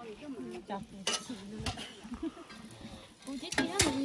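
A few sharp clicks and knocks, the loudest pair near the end, over faint voices in the background.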